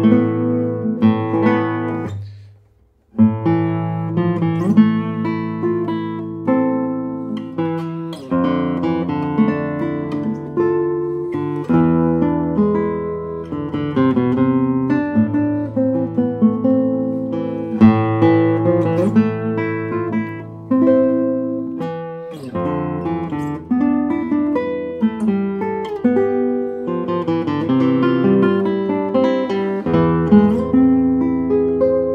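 1967 José Ramírez III 1A classical guitar, cedar top with Brazilian rosewood back and sides and nylon and carbon strings, played fingerstyle: a flowing passage of plucked melody notes over ringing bass notes, with a short break about two seconds in before the playing resumes.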